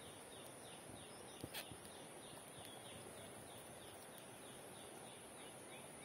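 Faint outdoor ambience: a quick falling chirp repeats evenly, about three times a second, over a steady high hiss, with a brief rustle about one and a half seconds in.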